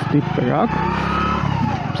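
Motorcycle engine running under way, its note rising and then easing off as the rider shifts down a gear.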